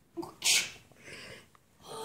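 A child makes a short, hissy burst of breath, sneeze-like, about half a second in, followed by fainter breath and handling noises.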